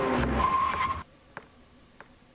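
Car tyres squealing under hard braking, the squeal cut off abruptly about a second in as everything drops to quiet, followed by one faint click.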